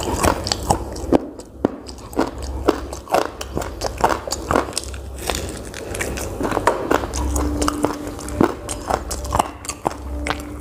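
Close-miked mouth sounds of eating fried chicken and pakora: chewing and biting, with many small sharp wet clicks and light crunches. A short steady low hum comes about seven seconds in and again near the end.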